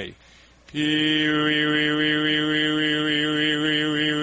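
A man's voice holding one steady low pitch while quickly alternating back and forth between "ee" and "oo" vowels, a vowel-equalizing exercise to discipline the tongue. It starts about three-quarters of a second in.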